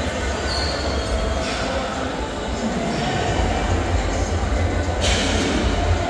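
Busy gym room noise: a steady low rumble with faint background voices, and a brief noisy burst about five seconds in.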